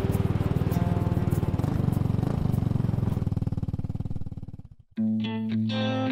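Intro sound effect: a low, fast-pulsing drone that fades away about four and a half seconds in. Guitar music then starts about five seconds in.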